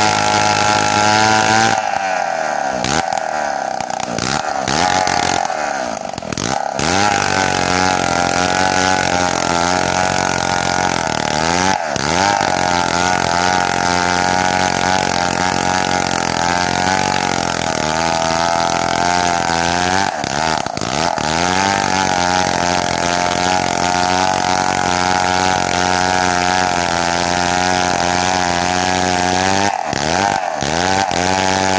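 Chainsaw running at high revs while ripping lengthwise through a log. Its engine note sags under load and recovers several times: a few seconds in, again about a third of the way through, and again past the middle.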